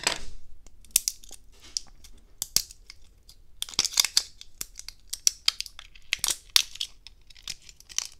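Plastic shrink wrap being cut and torn off a pair of small drone batteries: a run of short, high tearing and crinkling rasps with sharp clicks in between.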